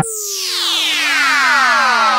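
Electronic house music breakdown: the beat cuts out and a synthesizer sweep falls in pitch, several tones gliding down together over a hiss.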